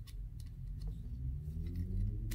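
Faint light clicks of small plastic model-kit parts being handled, with a low drawn-out hum that starts about a second in and rises slowly in pitch.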